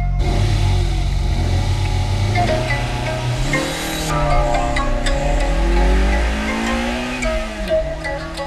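Toyota AE86 Sprinter Trueno engine running steadily, then rising and falling in pitch as the car pulls away, with music playing over it.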